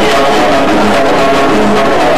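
Live band music on stage: a plucked string instrument playing over steady percussion.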